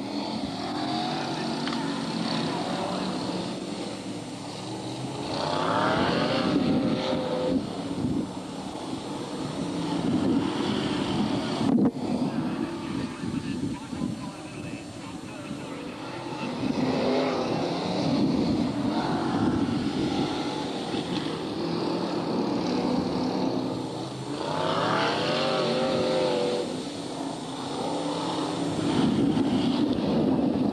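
BriSCA Formula 1 stock cars' V8 engines racing, the note climbing in pitch each time the cars accelerate past, about three times.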